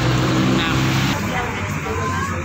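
Road traffic with a vehicle engine idling steadily, cut off abruptly a little over a second in.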